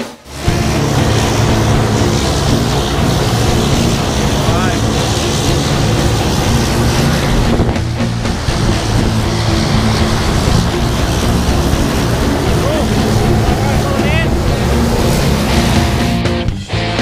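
Light single-engine aircraft's engine and propeller running on the ground, a loud steady drone with rushing air noise.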